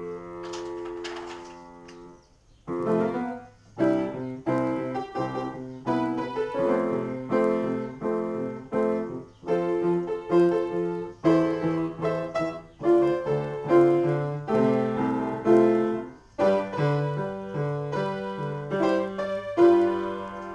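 Upright piano played solo. A held chord fades away over the first two seconds, then after a brief pause the playing resumes with chords in a steady rhythm.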